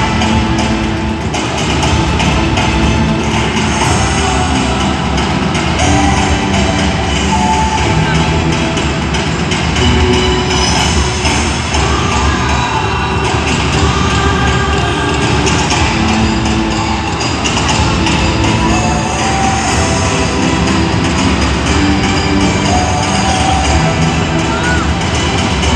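Loud show music playing over a large arena's sound system, with held melodic notes over a dense low accompaniment and no break.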